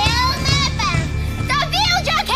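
A witch's high-pitched, wavering cackling voice over background music with a sustained low bass.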